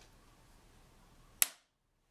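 A single sharp, loud click about a second and a half in, after which the sound cuts out to dead silence. This is typical of an edit splice in the recording, not of anything in the room.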